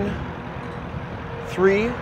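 Steady outdoor background noise with a faint low rumble in a pause between words, then a man's voice speaking again near the end.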